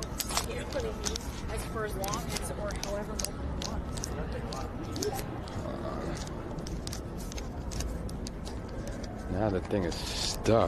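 Street ambience heard while walking a city sidewalk: a steady low rumble with faint voices of passers-by, and frequent short clicks and taps from close to the microphone. A man's voice starts near the end.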